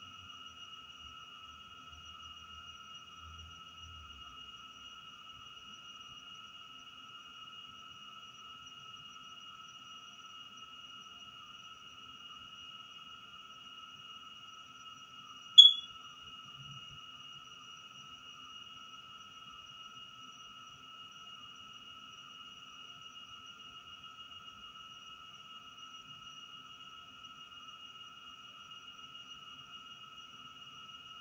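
A steady, high-pitched electronic whine made of two held pitches, unchanging throughout, with one sharp click about halfway through.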